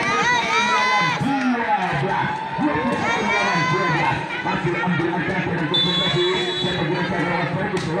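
Volleyball spectators shouting and cheering, many voices overlapping. A steady, high whistle sounds for about a second past the middle.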